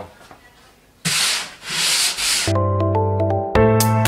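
Drywall joint compound being sanded by hand: three quick scraping strokes about a second in. Music with piano-like notes comes in just after the strokes.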